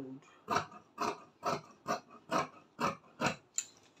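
Dressmaking scissors cutting through folded duchess satin fabric: a run of about seven short snips, a little over two a second, as the blades close stroke after stroke along the measured line.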